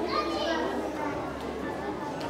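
Mixed chatter of children's and adults' voices, with a child's high voice standing out in the first half second.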